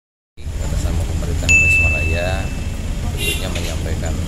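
Steady low outdoor rumble with faint voices in the background; about a second and a half in, a single high ding starts suddenly and rings on one steady pitch for about a second.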